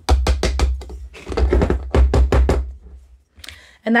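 Metal measuring spoon tapped rapidly against a canning funnel set in a glass mason jar, knocking chicken bouillon powder off the spoon into the jar: two quick runs of light knocks with a pause between them.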